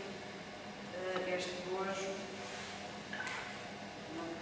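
Steady low hum of an electric potter's wheel running, under indistinct speech.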